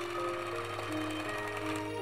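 Background music with soft, sustained notes that change pitch a few times.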